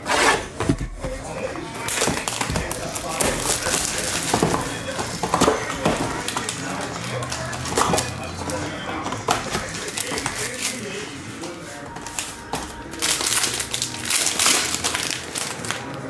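Plastic shrink wrap being slit with a cutter and peeled off a cardboard trading-card box, crinkling, then the box lid lifted and packs handled, with many small irregular clicks and rustles.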